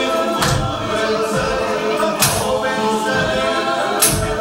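Live group of voices singing a Creole spiritual in choir-like harmony. Sharp hand-percussion strikes come about every two seconds.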